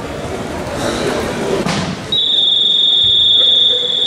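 A loud, steady, high-pitched signal tone cuts in about two seconds in and holds for over two seconds, over the murmur of a large hall.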